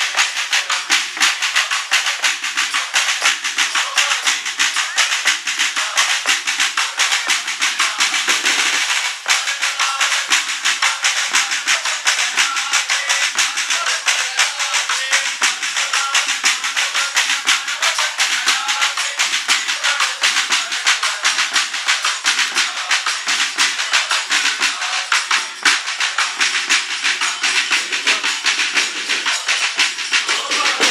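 Fast, continuous drumming with sticks on several strap-carried, skin-headed drums, with a rattling, shaker-like clatter. A group of voices sings carols under it.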